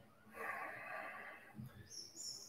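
A person breathing out audibly while holding a yoga pose: one faint, breathy exhale lasting about a second.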